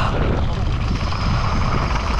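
Wind buffeting an action camera's microphone at speed, over the crunch and rattle of a downhill mountain bike's tyres on loose gravel.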